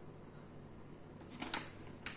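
Quiet room with a steady low hum, and a brief faint rustle of a paper packet being handled about one and a half seconds in.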